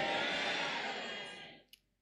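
Reverberation of a man's loud, amplified shout ringing on in a large hall and dying away over about a second and a half, followed by a faint click.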